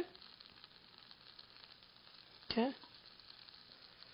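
Faint, steady sizzling with small crackles: stuffed okra shallow-frying in a little oil in a non-stick pan, kept moist with sprinkled water.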